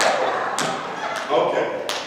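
Three sharp taps or knocks, the last loudest, from a handheld microphone bumping against the book and papers it is held with, mixed with a few words of a man's speech ringing in a reverberant church.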